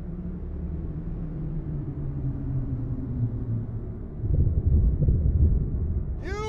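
Deep rumble in a film trailer's sound design, with slowly falling low tones. It swells into a heavier rumble about four seconds in.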